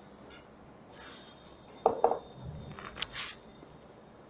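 Chalk on a blackboard: a faint stroke about a second in, two sharp taps around two seconds, then a short scratchy stroke about three seconds in.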